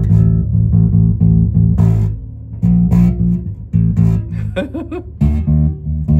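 Left-handed Fender Precision Bass, amplified, played as a line of plucked low notes with two short breaks, by a player trying a left-handed bass for the first time.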